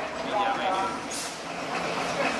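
Narrow-gauge passenger train running, heard from an open carriage, with passengers talking over it. About a second in there is a short, sharp hiss, after which a steady rumble carries on.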